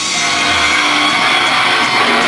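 Loud live rock band playing a dense, sustained wash of distorted electric guitars and cymbals, with fewer distinct drum hits than the passages around it. The sound is heavily distorted by the recording microphone.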